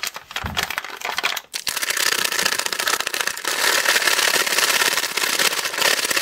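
A plastic MRE drink pouch is shaken hard by hand to mix shake powder with water. It crinkles and rattles rapidly and steadily, starting in earnest about a second and a half in, after some brief handling.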